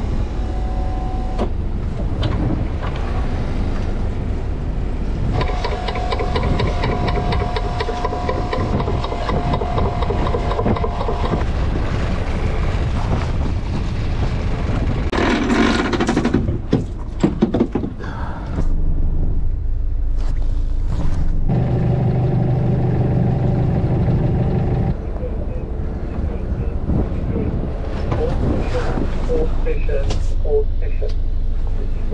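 Boat engine running under a longline hauler as line is hauled in, with a steady whine over the low rumble in two stretches and a cluster of sharp knocks and clatters about halfway through.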